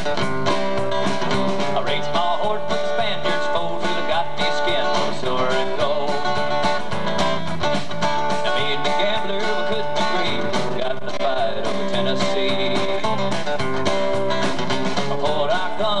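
Live country band playing an instrumental break: strummed acoustic guitars, bass guitar and drums keeping a steady beat.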